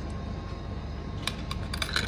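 Coins handled at a vending machine's coin slot: a quick run of small, sharp metallic clicks in the second half, as a coin goes into the slot.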